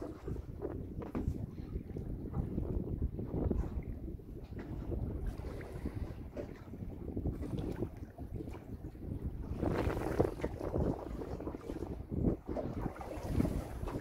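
Wind buffeting the microphone in a freshening breeze, a rough, uneven rumble that swells for a second or so about ten seconds in.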